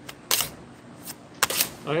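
Sharp slaps on a steel table as a gloved hand folds and presses down a mass of hot hard candy: one about a third of a second in, then two close together about a second and a half in.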